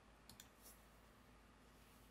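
Near silence with a faint computer mouse click about a third of a second in, two quick ticks close together, and a fainter tick just after.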